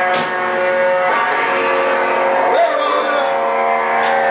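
Amplified electric guitar chord held and ringing out through the stage amps, with a pitch bend that swoops up and back down about two and a half seconds in.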